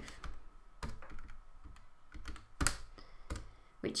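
Keys pressed one at a time: about half a dozen separate, unevenly spaced clicks as the value of 1 minus 66 over 35 is keyed in to be worked out.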